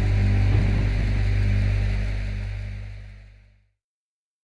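The final held chord of a Mexican banda ensemble, with a strong deep bass note under it, rings on and fades away, dying out about three and a half seconds in.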